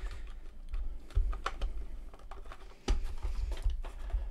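Portable transistor radio's case being pried apart by hand: scattered sharp clicks and dull knocks as the case halves are worked against whatever is still holding them, the sharpest click a little before three seconds in.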